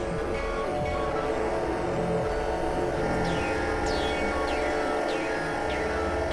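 Dense, layered experimental electronic music: many sustained droning tones sounding together, crossed by short high sweeps that fall in pitch and recur several times.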